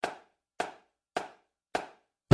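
Four sharp percussive knocks, evenly spaced a little over half a second apart, each ringing off briefly: a count-in to percussion music.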